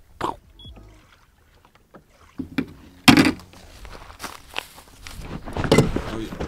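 Hollow knocks and scrapes from a plastic sit-on-top fishing kayak being handled at the water's edge, the loudest knock about three seconds in, with smaller ones after.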